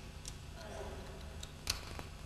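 A few short, sharp clicks, the loudest near the end, over a steady low hum.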